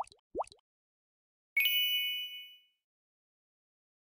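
End-card sound effects: two quick rising pops at the very start, then about one and a half seconds in a bright bell-like ding with several high ringing tones that fades out over about a second.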